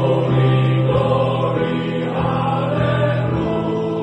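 Male voice choir singing loud, held chords in full harmony, the chords changing every second or so.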